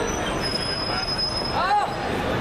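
Busy pedestrian street ambience: a steady hubbub of noise, with a thin high-pitched whine for about a second in the middle and a brief voice near the end.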